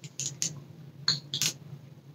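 Four faint, short clicks and smacks as CBD oil is taken from a glass dropper under the tongue and the dropper is brought back to its bottle.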